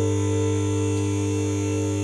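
Electric-hydraulic power unit of a two-post vehicle lift running with a steady hum as it raises a car's body shell off its engine.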